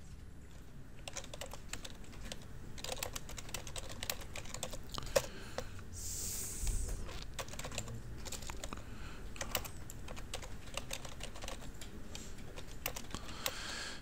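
Typing on a computer keyboard: a run of irregular keystrokes, with a short soft hiss about six seconds in.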